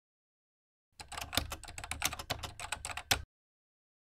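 Computer keyboard typing: a quick run of keystrokes starting about a second in and stopping abruptly about two seconds later.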